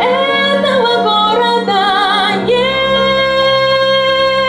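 A woman singing a pop ballad with vibrato: a run of moving notes, then one long held note from about two and a half seconds in. Under it, an instrumental accompaniment holds steady low notes.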